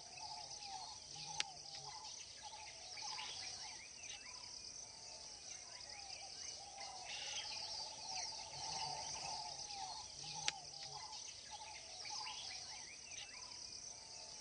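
Faint wild vegetation ambience: a steady high-pitched insect chorus with many short bird chirps and calls over it. Two sharp clicks stand out, one early on and one about three-quarters of the way through.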